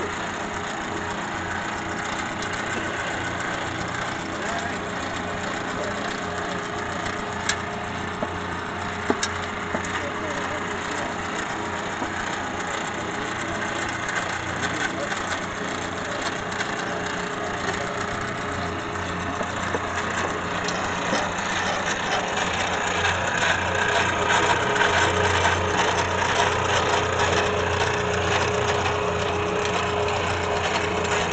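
Powered pipe threading machine running steadily as its die head cuts threads onto the end of a length of pipe, getting somewhat louder in the last third.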